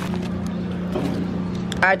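A steady low hum over a wash of background noise, with light rustling as a hand works at the lid of a cardboard fried-chicken bucket. A voice starts near the end.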